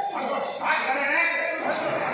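Men's voices shouting and calling out in a loud, continuous mix, a little louder about halfway through.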